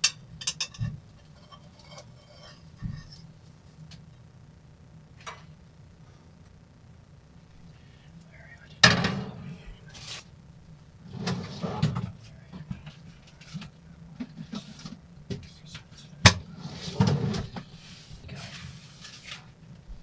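Kitchen handling sounds: a frying pan and utensils clattering, with sharp knocks and scrapes. The loudest bangs come about nine and sixteen seconds in, over a steady low hum.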